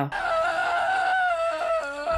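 A woman's long scream held at one slightly wavering pitch, from a horror film's soundtrack.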